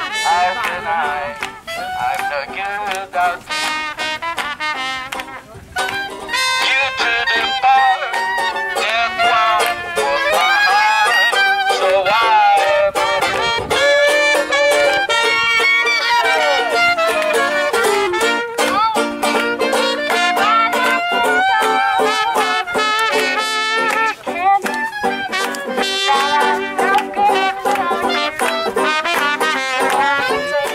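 Swing music played by a small band with clarinet, banjo and trumpet.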